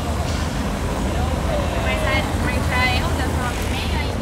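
Outdoor street ambience: passers-by talking close by over a steady low rumble. The voices come in bursts through the second half.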